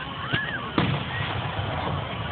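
Aerial fireworks bursting: two sharp bangs about half a second apart, the second the louder, over a steady low rumble.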